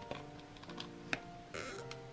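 Sharp clicks and taps of a steel ruler and craft knife being set down and repositioned on a plastic cutting mat, the loudest about a second in. A short scrape of the blade follows, over soft background music.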